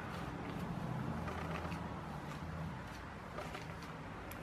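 Low rumble of road traffic passing outside, fading away about two-thirds of the way through, with faint rustling and ticks of a baby wipe being worked inside a plastic ostomy pouch.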